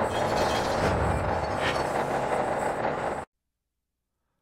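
Intro sound effect of heavy machinery and gears turning: a dense mechanical grinding and rumbling with a few metallic clanks, which cuts off suddenly about three seconds in.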